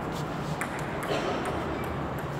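Table tennis ball clicking off the paddles and table during a rally: a few short, sharp clicks in the first second or so, over background chatter.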